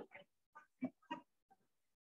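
Faint, short voice sounds: about five brief murmured bursts, too short to make out as words, with dead silence between them.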